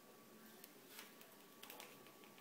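Near silence: room tone with a faint steady hum and a few soft clicks and ticks of small objects being handled, a single click about a second in and a short cluster near the end.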